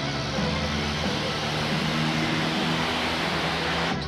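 Dramatic film background score with steady held low notes, over a continuous noisy wash of cars driving on a road.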